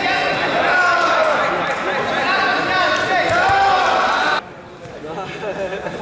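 Several voices talking and calling out at once, overlapping and indistinct. The sound cuts off abruptly about four seconds in, and quieter voices follow.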